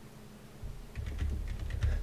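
Typing on a computer keyboard: a run of quick keystrokes that begins about half a second in.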